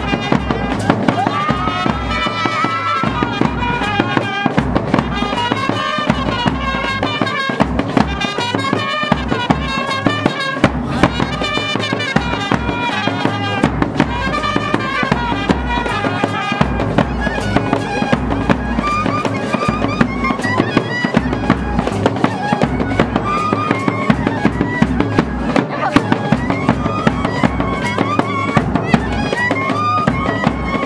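Nepali wedding band playing live dance music: a trumpet melody over fast, busy percussion with many sharp hits.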